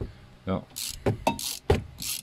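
A loose plastic underbody panel being wobbled by hand, giving a few sharp knocks and short scraping rustles. It is a looseness that can make a really annoying noise on the motorway.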